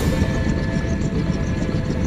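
Helicopter running on the ground with its main rotor turning: a steady low rumble.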